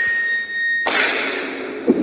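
Cartoon sound effects: a steady high beep-like tone cuts off sharply just under a second in. It is replaced at once by a loud noisy rush, with a short click near the end.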